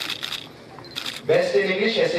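Camera shutter clicks in two short rapid bursts, one at the start and one about a second in, followed by a person talking loudly.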